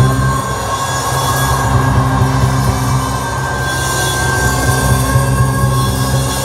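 A live band plays an instrumental passage between sung lines, with a heavy, steady bass and sustained held tones. It is loud and filmed from among the audience.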